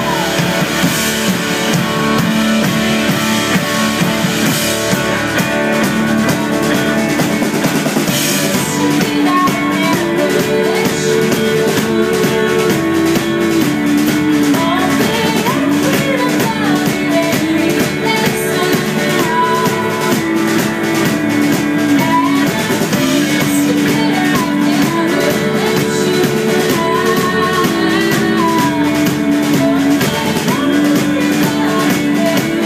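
Live band music: hollow-body electric and acoustic guitars playing with drums, recorded on a phone in the room. From about ten seconds in, voices hold long sung notes over the guitars.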